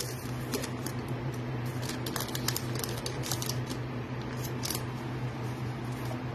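A foil trading-card pack wrapper being torn open and crinkled by hand, giving irregular crackles and clicks, over a steady low hum.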